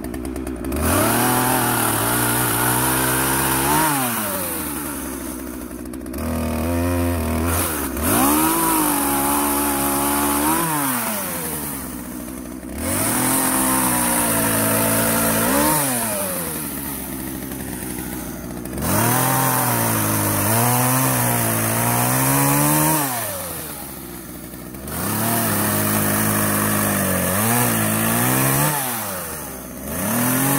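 Partner 351 two-stroke chainsaw revved to full throttle about five times, each burst held for a few seconds while cutting wood, dropping back to idle between cuts.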